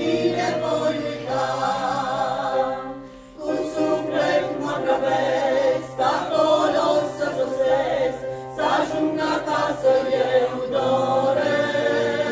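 Small mixed choir of women and men singing a Romanian Pentecostal hymn together. There is a brief breath between phrases about three seconds in.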